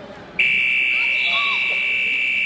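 Scoreboard buzzer sounding as the clock runs out, marking the end of the wrestling period. It is one loud, steady, high-pitched tone that starts suddenly about half a second in and holds on.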